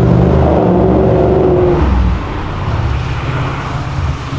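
A passing car's engine and exhaust, loud and steady at first, dropping off about two seconds in to lower road noise.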